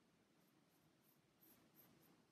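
Near silence: faint scratching of a paintbrush working acrylic paint on a wooden birch panel, a couple of strokes a little stronger near the end.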